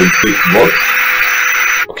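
Cordless drill running steadily, spinning a small salvaged massage-machine motor as a generator, with a faint high whine over the noise. The sound cuts off abruptly shortly before the end.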